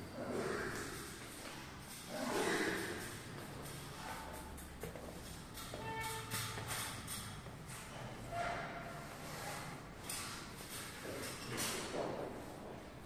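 Irregular rustling and knocking of work being done in a bare room, with a brief squeak about six seconds in.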